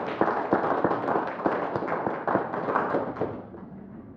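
Congregation applauding, a dense patter of many hands clapping that dies away about three and a half seconds in.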